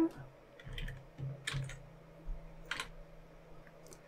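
Computer keyboard: a handful of separate keystrokes spread over a few seconds as code is pasted into the editor, the loudest about a second and a half in and near three seconds, over a faint low hum.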